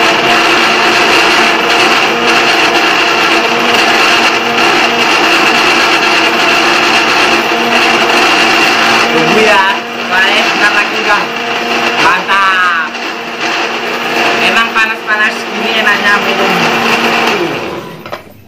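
Electric countertop blender running steadily as it purees guava into juice, then winding down and stopping just before the end.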